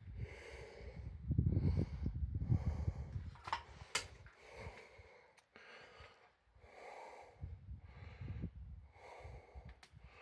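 Heavy breathing close to the microphone, puffs of breath coming a little under a second apart. Two stretches of low rumbling noise on the microphone and a sharp click about four seconds in.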